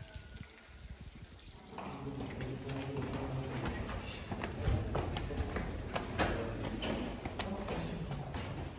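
Footsteps on stone stairs, a few sharp steps over the second half, with indistinct murmuring voices of people around; the first couple of seconds are quiet.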